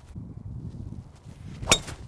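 Golf driver striking a ball off the tee: a single sharp crack with a brief metallic ring, about a second and a half in. It is a well-struck drive that felt really good.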